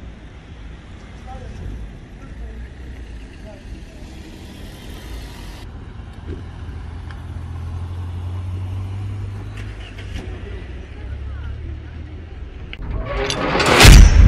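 Street sound with people's voices and a car engine whose low rumble builds as the car drives past close by. Near the end a loud rising whoosh sweeps in, a transition sound effect into the outro.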